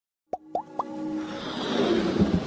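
Intro sound effects for an animated logo: three quick pops rising in pitch, about a quarter second apart, then a whoosh that swells steadily.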